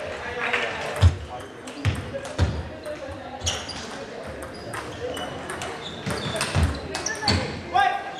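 Table tennis rally: quick irregular clicks of the ball striking bats and the table, echoing in a large sports hall, with a few low thuds and distant voices.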